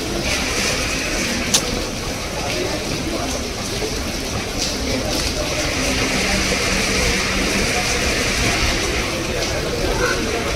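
Indistinct background voices over a steady, noisy hubbub, with one sharp click about a second and a half in.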